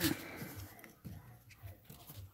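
Faint handling noise from a phone camera being repositioned, a low rumble with a few soft taps about a second in and again shortly after.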